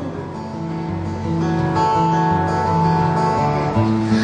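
Acoustic guitar strummed, chords ringing and changing about every second.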